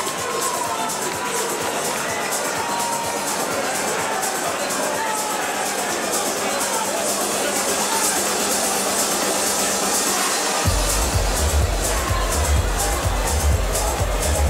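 Music playing over crowd applause and chatter in a hall. A heavy bass beat comes in suddenly near the end.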